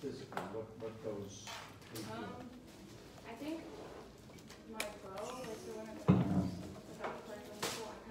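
Quiet, indistinct talking in a room, with a short low thump about six seconds in.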